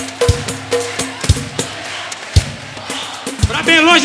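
Live samba band playing without singing: percussion with deep drum beats under a short note repeated several times in the first second. A voice starts singing again near the end.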